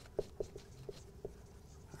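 Dry-erase marker squeaking faintly on a whiteboard in about five short strokes as words are written.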